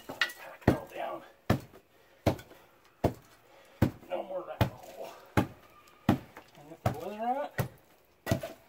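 Steel hand tamper pounding loose dirt to pack it down, a dull thud about every three-quarters of a second, about eleven strikes.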